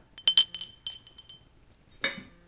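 Small crystal bell being shaken: a few quick strikes near the start, then one high, clear note ringing out and fading over about a second.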